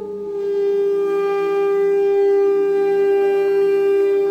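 Saxophone holding one long, steady note that swells louder over the first second. Its sound is processed live through electronics.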